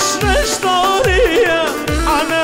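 Live Kurdish wedding dance music from a keyboard-led band: a wavering, heavily ornamented melody over a thudding low drum beat, about two beats a second.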